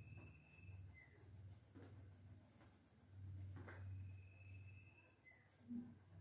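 Faint scratching of a coloured pencil shading on a sketchbook page, in irregular back-and-forth strokes. A thin high tone sounds twice, once at the start and again from about three and a half to five seconds in.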